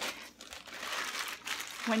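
Thin plastic bag crinkling as it is handled and pulled back from a lump of stored wet clay, starting about half a second in.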